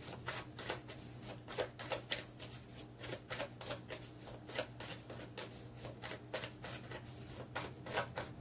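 Tarot cards being shuffled by hand: a run of quick, irregular card flicks and slaps, over a faint steady low hum.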